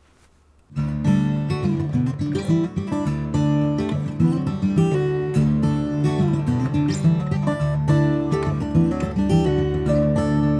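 Acoustic guitar music, beginning after a brief near-silence about a second in and playing on steadily.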